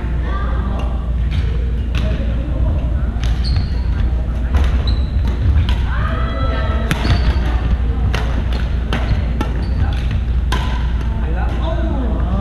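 Badminton rally on a wooden gym floor: sharp racket strikes on the shuttlecock every second or two, sneakers squeaking in short bursts of movement, over a steady low hum in the hall.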